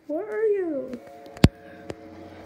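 A long meow-like call, rising then falling in pitch, over the first second. A sharp tap about one and a half seconds in, the loudest sound, with a fainter tap near the end.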